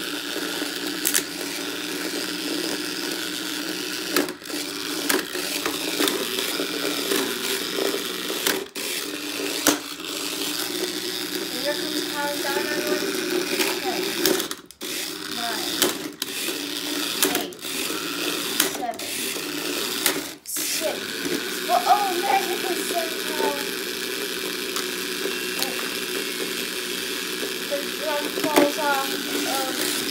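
Small electric motors of toy remote-control battle robots whirring steadily as they drive and shove each other, with scattered plastic clicks and knocks from their bumping.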